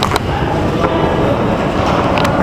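Loud, steady low rumble of a large indoor station concourse, with a few irregular footstep-like clicks as someone walks through it.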